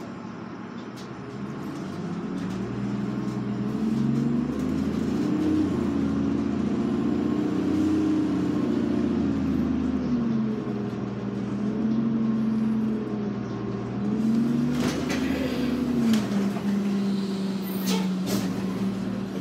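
New Flyer D40LF diesel transit bus pulling away from a standstill, heard from inside near the front. The engine note climbs in pitch and loudness, drops back and climbs again as the transmission changes gear, then settles to a steady drone, with a couple of clunks near the end.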